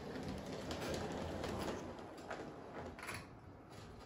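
G-scale model train, an electric-outline locomotive with a caboose, running along the track: a quiet steady rumble of motor and wheels that swells and fades, with a few light clicks.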